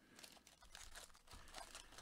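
Faint crinkling of foil trading-card pack wrappers as the packs are handled and pulled apart.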